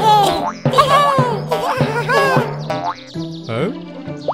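Cartoon background music with a steady bass line, overlaid with a run of springy boing sound effects over the first two and a half seconds, as for characters bouncing on an inflatable bouncy castle.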